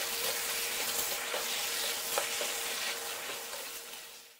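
Beef tripe (botti) sizzling as it fries in a pan and is stirred with a wooden spatula, with a few light knocks and scrapes of the spatula against the pan. The sizzle eases off near the end.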